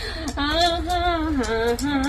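A woman singing with long, wavering held notes.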